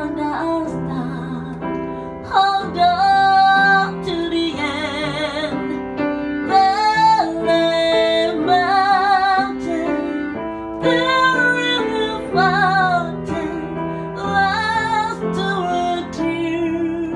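A woman singing a slow ballad to her own piano accompaniment, her long held notes wavering with vibrato over sustained chords.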